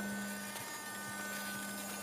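A steady low hum with a faint, steady high tone above it.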